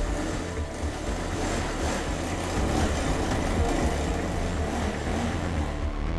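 A motorcycle engine running as the bike pulls away and rides off, a continuous sound with a strong low rumble.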